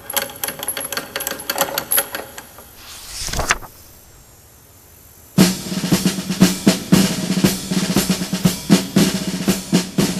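Snare drum rolls: rapid drum strokes for about two seconds, a short rising swell, a pause of nearly two seconds, then a longer roll over a steady low tone.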